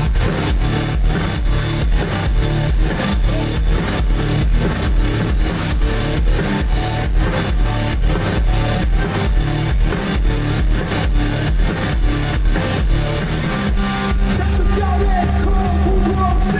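Live rock band playing loudly: electric guitars, bass and a drum kit keeping a steady beat. Near the end a long low note is held under the drums.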